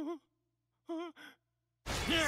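A cartoon character's wordless vocal sounds: three short wavering breathy hums, then a louder cry that slides down in pitch, with a burst of noise, starting near the end.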